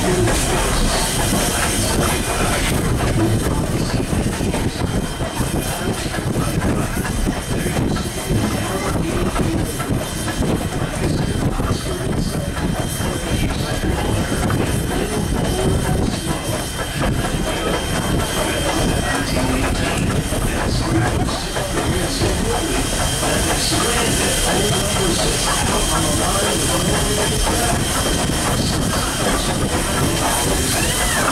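Canadian National 89, a 2-6-0 steam locomotive, running with the train close at hand, its working and the rattle of wheels on rail joints making a steady, loud din.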